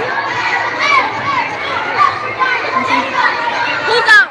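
Many children talking and shouting at once, a steady crowd of kids' voices with no single speaker standing out.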